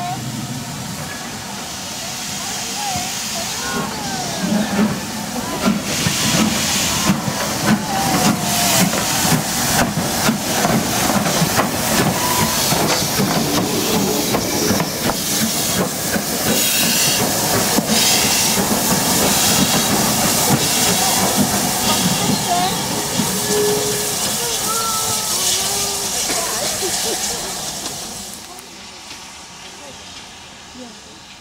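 Steam locomotive, LMS Stanier 8F 2-8-0 No. 48305, moving slowly past at close range with loud steam hiss and a run of knocks and clanks from its wheels and motion. The sound fades away near the end.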